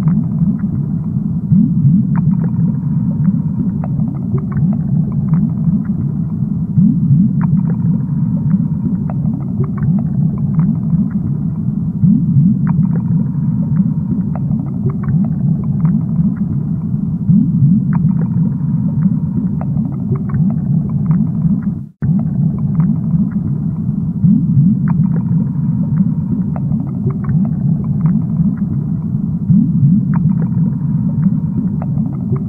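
Low, steady underwater rumble of a fish tank, with bubbling and many small clicks and pops. It breaks off for an instant about 22 seconds in.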